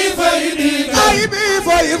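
A man chanting an Arabic devotional poem in praise of the Prophet Muhammad, a Sufi qasida, into a microphone. It is a single melodic voice with ornamented pitch that wavers and glides.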